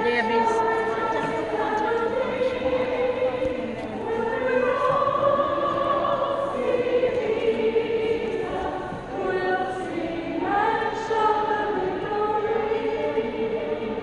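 A gathering of women singing a song together, led by a woman song leader, in long held notes phrase by phrase.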